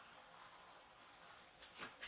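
Near silence: room tone, with two faint short ticks near the end.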